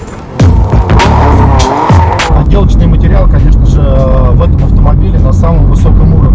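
Music with a beat for about the first two seconds, then the steady low drone of engine and road noise heard inside a moving BMW M4's cabin.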